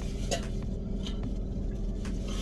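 Steady low hum inside a car cabin, with a few faint short clicks and rustles.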